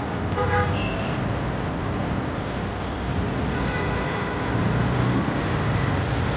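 Road traffic at a busy junction: a steady rumble of engines, with a short vehicle-horn toot about half a second in and a fainter horn tone around four seconds in.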